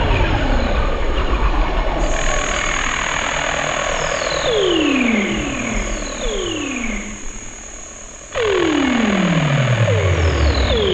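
Glitchy electronic noise music from a Pure Data patch: randomly chosen drum samples run through reverb and delay, a dense noisy texture with repeated falling pitch sweeps. A thin high whine enters about two seconds in. The sound thins out around seven seconds in, then cuts back in suddenly about a second later.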